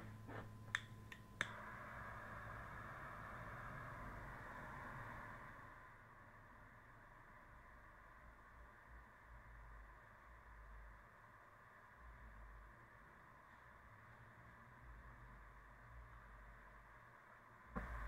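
Jet-flame butane torch lighter clicked a few times, catching about a second and a half in, then its flame hissing faintly and steadily while it lights the end of a cigar. The hiss is stronger for the first few seconds, then drops lower.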